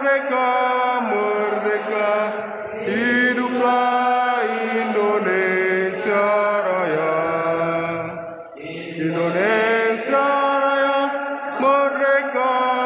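A single voice chanting in long held notes, with pitch sliding up and down between them, about three seconds in and again near nine seconds.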